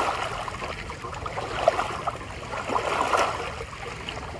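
Lake waves lapping and splashing against shoreline boulders, coming in irregular surges, with a sharp splash a little before the middle.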